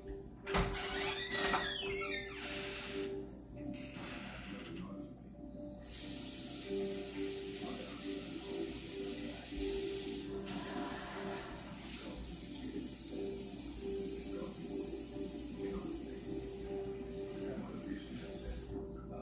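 Tap water running from a kitchen faucet as hands are washed: a steady hiss that starts about six seconds in and stops near the end. Faint music plays underneath, with a few knocks and handling sounds at the start.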